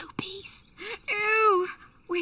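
A woman's voice: a brief whisper, then one drawn-out vocal sound that rises slightly in pitch and falls away, with no clear words.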